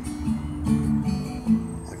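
Acoustic guitar strummed, the chord changing several times.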